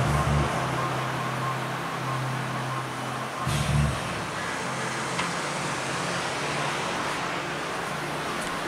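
A car's engine running at low speed: a steady low hum, with a brief louder surge about three and a half seconds in.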